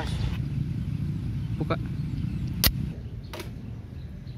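Low rumbling background noise, a single sharp click a little past halfway, then the background turns quieter.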